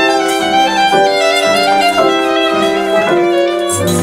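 Violin playing a short melodic phrase of held, bowed notes that change every half-second or so, with a deep low note coming in near the end.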